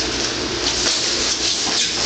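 Wrestlers' shoes and bodies scuffing and shifting on a vinyl wrestling mat as one drops in on a shot, over a steady rushing background noise with a low hum.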